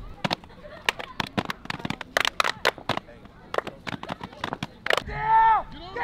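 Players' gloved hands clapping and slapping in a quick, irregular run of sharp smacks, close to twenty in five seconds. A voice calls out loud and drawn-out near the end.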